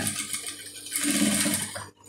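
Sewing machine running as it stitches through layered fabric, stopping abruptly near the end.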